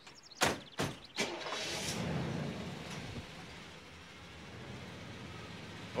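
Police patrol car: two doors slammed shut in quick succession, then the engine starts and runs, louder for a couple of seconds before settling to a steadier, quieter level.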